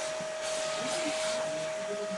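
Vacuum cleaner running steadily, a constant whine over an even rushing hiss.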